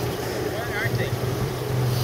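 Boat motor idling, a steady low hum under wind and water noise.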